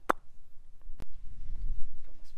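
Low rumble of wind buffeting the microphone, building in the second half, with one sharp click about a second in.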